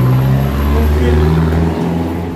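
A motor vehicle passing close by on a highway: a loud, low engine drone that fades away near the end.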